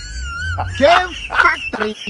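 A person's voice making short, wordless vocal exclamations. It opens with a wavering high-pitched whine, then short sliding vocal sounds follow.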